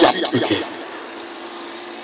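A vehicle engine running steadily amid road traffic noise, with the last of a man's amplified speech in the first half-second.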